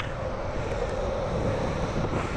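Downhill longboard rolling fast on asphalt, heard from a microphone on the rider: a steady rush of wind on the microphone and wheel roar, with a faint steady hum.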